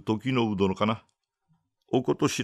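A man reading aloud in Japanese. He stops about a second in, leaving near silence, and starts again just before the end.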